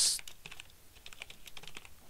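Typing on a computer keyboard: a quick run of soft key clicks.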